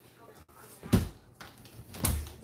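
One short spoken word about a second in, over faint noise from a handheld phone being moved.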